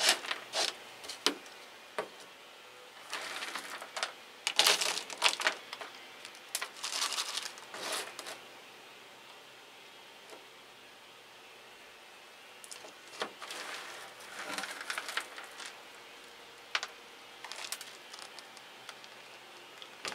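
Hands handling an orchid plant, a clear plastic pot and coconut husk chips: intermittent rustling, crinkling and light clicks, with a quieter pause about halfway through.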